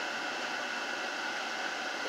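Steady hiss of moving air with a faint hum inside a car cabin, typical of the car's ventilation fan running.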